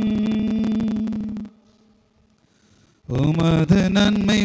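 A priest chanting a Mass prayer in Tamil through the church's microphone and loudspeakers, holding one steady reciting note, pausing for about a second and a half midway, then going on with a moving melody.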